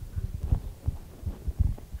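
Handling noise from a handheld microphone as it is passed to an audience member: an uneven string of low, dull thumps and rubbing.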